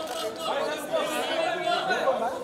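Chatter of several press photographers' voices calling out at once, overlapping, with no single speaker standing out.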